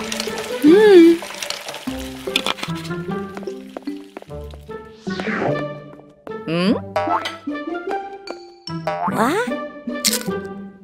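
Playful children's cartoon background music with comic sound effects: several sliding pitch glides, some rising and some falling, over the tune.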